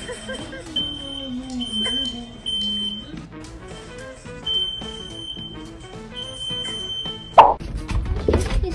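Smoke alarm sounding in high, steady beeps of uneven length, over background music. A single loud, sudden sound comes just before the end.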